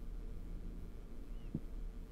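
Quiet room tone: a low, steady hum, with one faint knock about one and a half seconds in.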